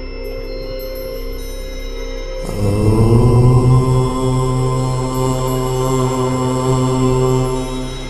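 A low voice chanting one long 'Om' over a steady drone. The chant enters about two and a half seconds in with a short upward slide in pitch, then holds one pitch for about five seconds before fading near the end.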